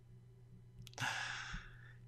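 A man's short breathy exhale through the mouth or nose, about a second in, after a pause of near silence.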